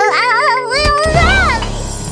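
A cartoon character's high, wobbling cry as it slips, over children's song music, with a thump about a second in as it falls to the floor.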